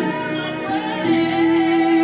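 Cello bowed in long held notes, the pitch changing about every half second to a second.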